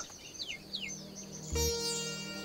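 Two short, falling bird calls over a low held music drone, then a sustained orchestral-style chord swells in about one and a half seconds in.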